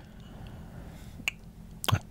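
A pause in conversation, with quiet room tone and one short, sharp click about a second and a quarter in. Speech starts again just before the end.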